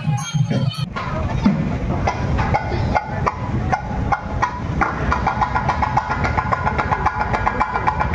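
Edited-in music for about the first second, then cuts to live temple percussion: fast, even drum strokes, joined about halfway by a higher pitched melodic line, with crowd noise underneath.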